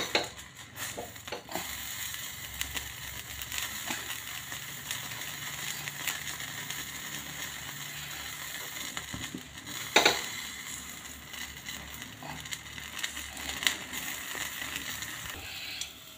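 Whole brinjal roasting directly over a gas burner flame: a steady hiss with small crackles and sizzles as the skin chars. A sharp click about ten seconds in.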